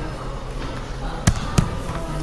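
Two sharp knocks about a third of a second apart, handling bumps on the phone as it is swung around, over a steady café room hum.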